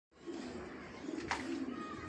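Pigeons cooing in a low, wavering series, with one sharp click a little over a second in.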